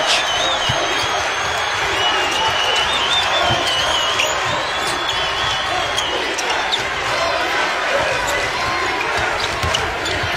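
Steady arena crowd noise during live college basketball play, with a basketball dribbling on the hardwood court. Thin, wavering high tones run over the crowd.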